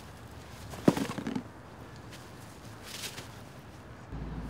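A body being pushed down onto a blanket on grass: one sharp thump about a second in, with brief scuffling of clothing, then a fainter rustle near three seconds.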